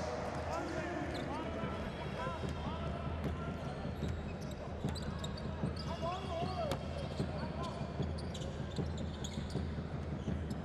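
A basketball bouncing on a hardwood court in a large arena, with short sneaker squeaks among the hits and a steady background murmur of crowd and players' voices.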